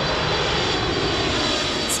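Jet engines of a four-engine airliner flying low overhead: a steady, even rushing noise with a faint high whine.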